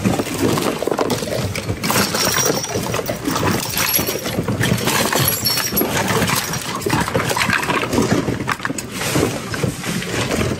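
Hands rummaging through a heaped bin of mixed secondhand goods: hard plastic, glass and metal items clattering and clinking against each other over a steady busy din.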